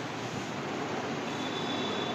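Steady background noise, an even hiss with a faint high tone coming in during the second half.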